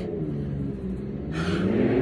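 A vehicle engine droning, its pitch dipping and then rising again, with a rushing hiss building up near the end.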